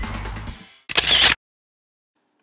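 Background music fading out, then a single short, sharp transition sound effect about a second in, lasting about half a second.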